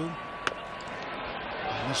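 Ballpark crowd noise under a radio baseball broadcast, a steady murmur between the announcer's calls, with one sharp click about half a second in.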